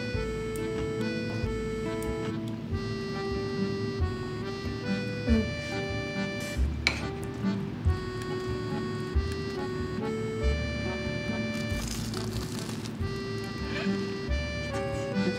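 Light background music of held notes stepping from one to the next over a soft bass pulse. Near the end comes a short crunchy bite into a deep-fried snack.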